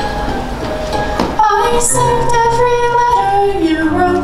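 A female voice begins singing about a second and a half in, holding long notes over musical accompaniment; before that there is only a low rumble of room noise.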